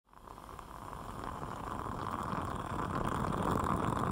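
Coffee brewing with a bubbling, boiling noise that fades in and grows steadily louder.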